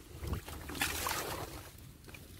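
Water sloshing and swishing as a hand stirs a shallow ditch among water hyacinth stems, with the stems rustling. The splashing is strongest about a second in.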